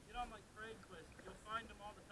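Faint, short voice sounds without clear words, several in quick succession, over a soft background hiss.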